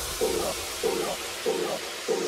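Breakdown in a club dance-music mix: the bass drops away, leaving a short mid-range synth stab repeating about three times a second over a steady white-noise hiss.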